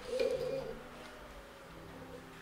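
A short, quiet cooing vocal sound lasting about half a second, followed by faint held instrument notes.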